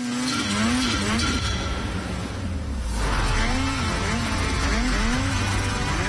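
Snowmobile engine revving in repeated rising-and-falling swells, over music with a heavy bass.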